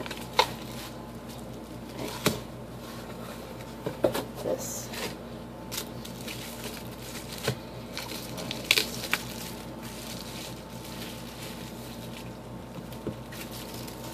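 Bubble wrap and a cardboard shipping box being handled as a paperback book is unpacked: crinkling, rustling and sharp clicks and taps, frequent in the first nine seconds and sparse after that.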